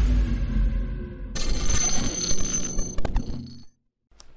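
Intro logo sound effects: a deep low boom that fades, then about a second and a half in a bright ringing chime-like shimmer with several high tones that dies away and cuts off suddenly shortly before the end.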